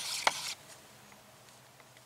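Activated candy paint being stirred in a mixing cup: a stir stick scraping with sharp knocks about three times a second, stopping about half a second in, then near silence.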